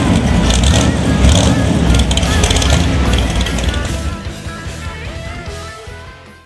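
Boss Hoss motorcycle's 540 cubic inch big-block V8 with open headers running loud, a deep rumble that comes in suddenly and fades out toward the end, under rock background music.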